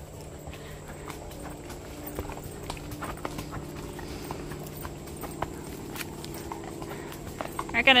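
Horses walking on a dirt trail: soft, irregular hoofbeats at a walk.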